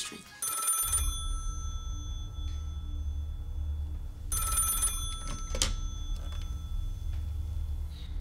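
Landline telephone ringing twice, about four seconds apart, over a low steady rumble.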